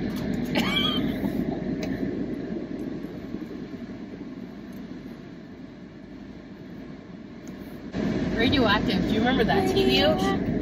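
Steady road noise inside a moving car, fading down over several seconds; about eight seconds in it cuts abruptly back to full level, with voices over it.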